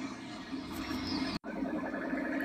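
Faint, low background sound with weak pitched traces, broken about one and a half seconds in by a sudden instant of total silence, as at an edit join.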